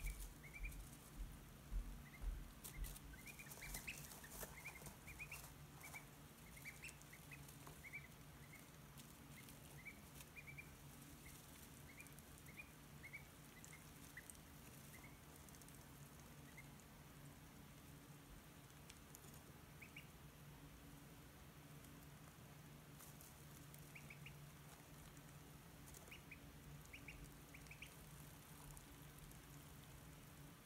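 Newly hatched ducklings peeping faintly: short high peeps, many in the first fifteen seconds or so and only now and then after that, over a steady low hum.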